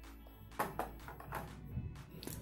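Faint background music, with a few light clicks and rustles as a coiled USB cable is set into a clear plastic tray.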